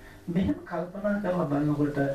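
Speech only: a Buddhist monk's voice giving a sermon in Sinhala into a microphone, starting after a brief pause.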